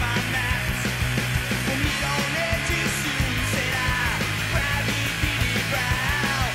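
Background rock music with a steady beat and a sung vocal line.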